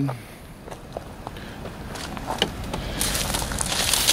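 Footsteps on gravel with scattered light crunches, then a louder rushing hiss over the last second.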